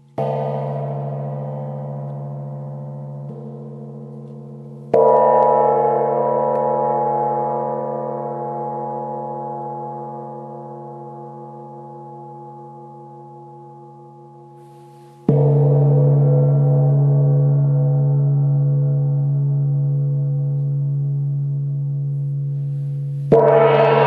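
A gong struck three times: at the start, about five seconds in, and about fifteen seconds in. Each strike rings on with a deep steady tone under many higher overtones and fades slowly until the next. The last strike is the loudest.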